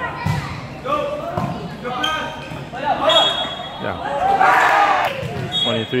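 Several voices of players and spectators talking and calling out in a large, echoing gymnasium, with a louder shout about four and a half seconds in and a few dull thuds.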